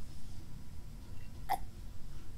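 A person drinking from a cup, with one short gulp as he swallows about one and a half seconds in.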